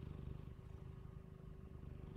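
Faint, low, steady room hum with a thin constant tone; no distinct event.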